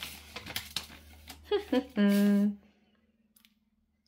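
Paper envelope being opened by hand and a folded sheet pulled out: a run of light paper crinkling and rustling, then a short hummed "mmm" about two seconds in.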